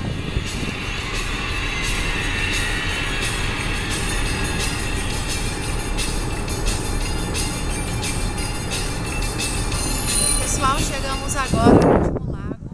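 Steady road and engine noise of a car driving at highway speed, heard from inside the car. A brief, louder voice-like sound comes just before the end.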